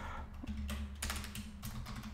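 Typing on a computer keyboard: an irregular run of key clicks.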